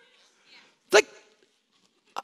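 Speech only: a man says one short word about a second in, on a stage microphone; the rest is a pause.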